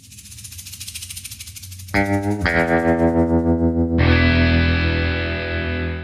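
Intro music sting: a pulsing build for about two seconds, then distorted electric guitar chords striking twice and a final big chord at about four seconds that rings out and fades near the end.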